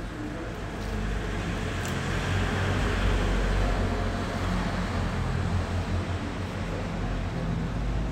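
Road traffic: a motor vehicle's low engine rumble that builds about two seconds in and keeps on steadily.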